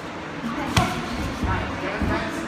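Boxing gloves landing during sparring: one sharp smack a little under a second in, the loudest sound, and a softer hit about half a second later.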